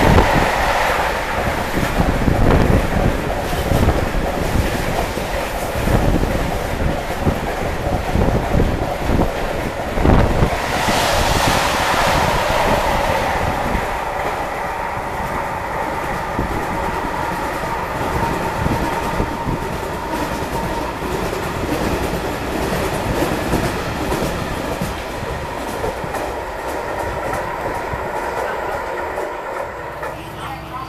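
Container freight train's wagons passing close by at speed: wheels clattering over the rail joints with a continuous rumble and a steady high tone above it. The noise eases slowly in the second half as the train goes by.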